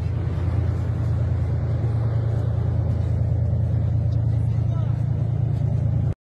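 A steady low rumble throughout, with faint voices near the end.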